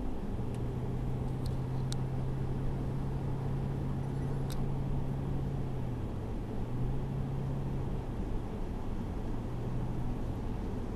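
Car cabin noise while driving at highway speed: a steady rumble of tyres and engine with a low, even engine hum that drops away twice briefly in the second half. A few faint ticks sound in the first half.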